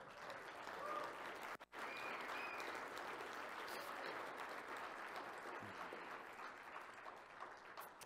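Audience applause: a steady wash of clapping following a talk's closing thanks, broken off for an instant about a second and a half in, then carrying on.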